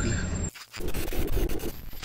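Digital glitch transition effect: crackling static with many sharp clicks that cuts in abruptly about half a second in, after a moment of low engine hum in the cab.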